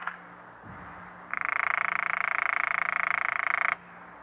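Telephone ringing: one buzzy, rapidly pulsing ring about two and a half seconds long, starting a little over a second in and cutting off sharply. It is the sign of the call ringing through on the line.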